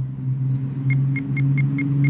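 XP MI-6 pinpointer beeping in short, evenly spaced pips, about four a second, starting about a second in as its tip nears a buried quarter: its target-detection signal. A steady low hum runs underneath throughout.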